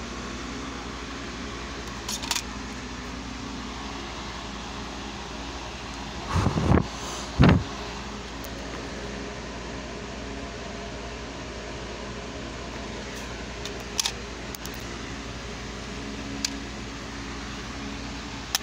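Steady background hum like a room fan, with a few light clicks and two louder bumps about six and seven seconds in: handling noise from the plastic DVD case, discs and camera.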